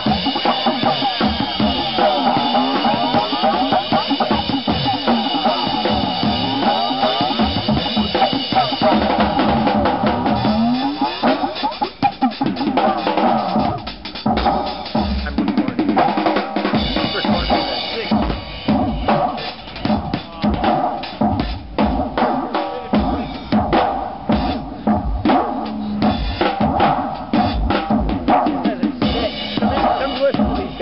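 Live Yamaha acoustic drum kit, kick, snare and cymbals, played over sustained electronic music through a sound system. The music briefly drops away about twelve seconds in, and in the second half the drumming turns into a fast, dense run of hits.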